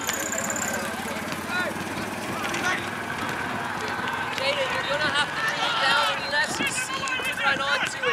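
Shouts and calls from soccer players and sideline spectators at a distance, several voices overlapping with no clear words.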